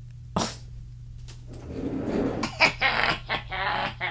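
A woman laughing: a short sharp burst of breath near the start, then breathy laughter from about halfway in, breaking into several short bursts toward the end.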